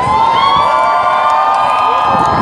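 Crowd cheering and shouting, several voices holding long high cries together.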